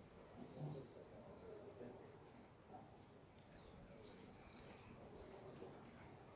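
Faint outdoor ambience: scattered short high bird chirps over a steady high-pitched insect drone.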